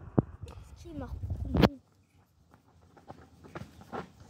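A man's voice calling out a name once, amid a few short sharp knocks and faint scattered clicks. The sound drops out almost completely for a moment just before the middle.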